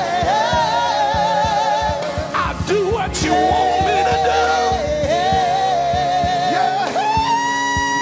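Church praise team singing gospel music with musical accompaniment, the voices holding long notes with vibrato.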